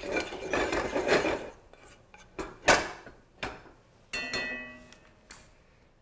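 A pot and kitchenware being handled on a stove: a scraping rustle at first, then a couple of sharp knocks and a short ringing clink about four seconds in.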